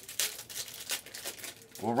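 Trading-card pack wrappers crinkling and rustling in quick, irregular crackles as packs are handled during a box break.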